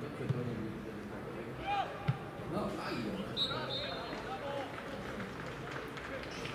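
Football players shouting to each other on an outdoor pitch, with two sharp thuds of the ball being struck, about a third of a second in and about two seconds in.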